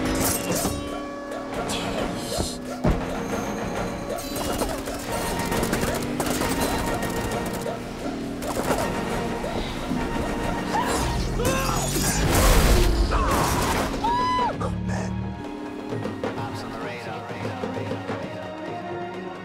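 Film action soundtrack: dramatic score with a steady beat, mixed with crashes, thuds and impacts of a fight during a car chase. The heaviest, deepest crash comes about twelve to thirteen seconds in.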